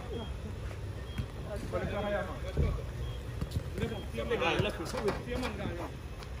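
Men's voices calling out on a football pitch, in two short stretches, over a steady low rumble.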